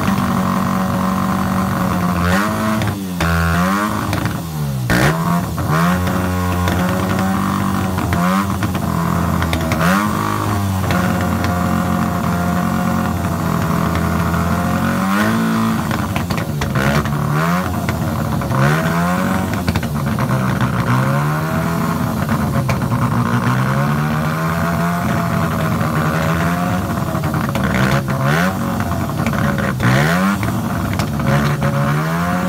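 A Norton café-racer motorcycle's engine running at idle and repeatedly blipped on the throttle. Each rev rises and falls in pitch, about a dozen times, with the steady idle between.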